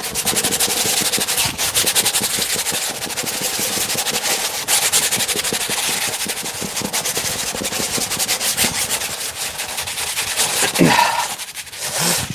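A bristle brush scrubbing oil paint onto a stretched canvas in fast, vigorous back-and-forth strokes: a continuous, rapid, scratchy rubbing that stops about a second before the end.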